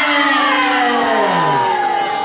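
Long drawn-out vocal calls, several voices at once, each sliding slowly down in pitch. One drops steeply near the end. The sound fits a ring announcer holding out a wrestler's name over the PA with the crowd calling along.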